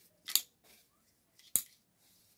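Two short, sharp snips about a second apart: scissors cutting the tag off a new top.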